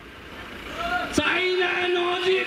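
A man's long, held shout into a microphone over a public-address system, starting with a sharp pop about a second in and then sustained on one steady pitch. A low rumble fills the first second before it.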